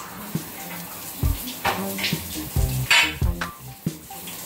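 Metal poles of a heavy-bag stand clinking and knocking against each other and the frame as they are lifted out, with the sharpest clink about three seconds in. Background music with a low beat runs underneath.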